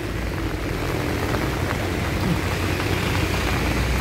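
Steady hiss of heavy rain with a continuous low rumble underneath.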